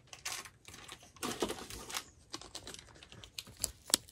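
Small clear zip-top plastic bags crinkling and rustling as they are handled, in a few short bursts with some sharp clicks.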